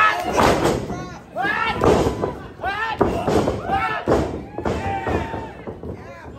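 Repeated thuds of bodies striking in a wrestling ring during a corner exchange, about a second apart, with loud shouting voices after each impact.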